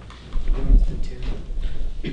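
Irregular low thumps and knocks with a deep rumble, starting about a third of a second in: handling noise on the camera's microphone as the camera is moved.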